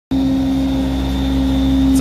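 Everest 650 truck-mounted carpet-cleaning machine running steadily: a constant engine and vacuum-blower drone with a strong steady hum.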